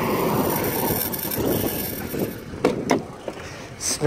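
Crunching of footsteps on loose gravel and stones, a dense grainy crackle that fades over the few seconds, with a few sharper scuffs near the end.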